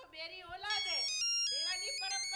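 A mobile phone ringtone: a quick melody of high electronic beeps stepping up and down in pitch, starting just under a second in, with voices underneath.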